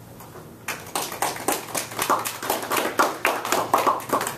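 A small group of people applauding a speaker. The individual hand claps are distinct, starting just under a second in.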